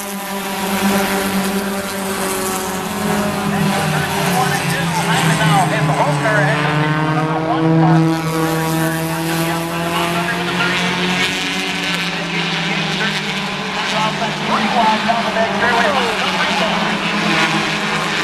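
Four-cylinder stock cars racing on an oval short track, several engines running at once, their pitch rising and falling as the cars pass.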